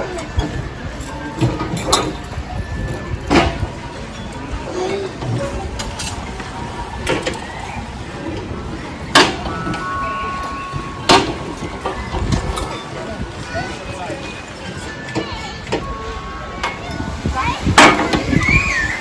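Playground ambience: children's voices in the background, with sharp knocks and clinks now and then over a steady low rumble. The loudest knock comes just before the end.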